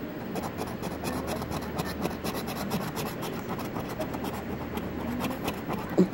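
A metal coin scraping the scratch-off coating off a paper lottery ticket: a continuous run of quick, short scraping strokes.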